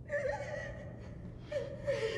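A frightened man gasping and whimpering in two short, wavering bursts, over a low steady hum.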